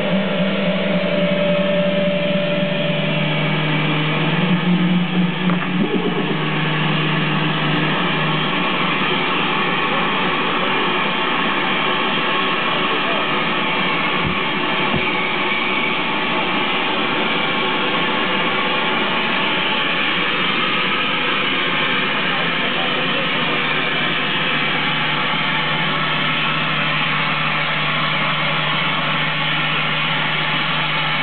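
Loud, steady wall of amplified noise from a live band, with held guitar-like tones that fade out about eight seconds in, leaving an even hiss-like drone. Two soft low knocks come about halfway through.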